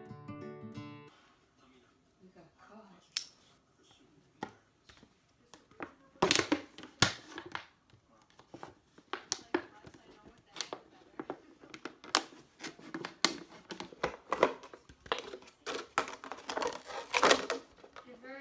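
Thin plastic drink bottles being cut with a knife and handled, giving irregular crackles and sharp snaps of plastic, densest near the end. A short stretch of music ends about a second in.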